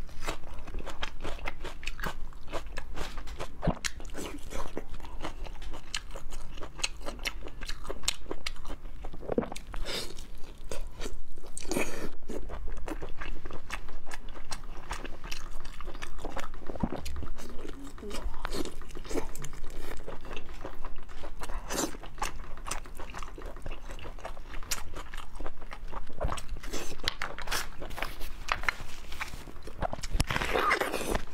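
Close-miked mouth eating sounds: wet chewing, smacking and biting with many sharp clicks, as dark braised pork intestine is eaten.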